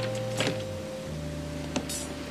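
Soft held music chords, changing about a second in, over a few footsteps on shingle pebbles.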